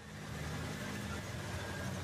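Engines of a tank and other heavy military vehicles running, a steady low drone that fades in over the first half second.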